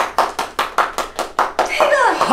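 Rapid, even hand claps, about six a second, which stop shortly before a voice cries out with a falling pitch near the end.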